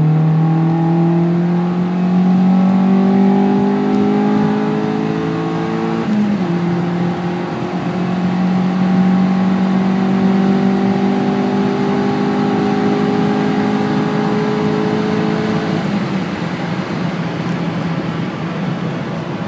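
Honda Civic Si EP3's 2.0 L K20 four-cylinder pulling hard under full throttle, heard from inside the cabin, breathing through a cone air filter and a resonator-back straight-pipe exhaust. The engine note climbs steadily, dips sharply about six seconds in, then climbs again more slowly until the rising note stops about sixteen seconds in.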